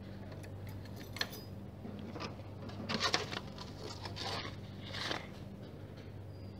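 Keys clicking and jangling in the lock of a metal post office box, then envelopes rustling as they are pulled out, with a few sharp clicks scattered through. A steady low hum runs underneath.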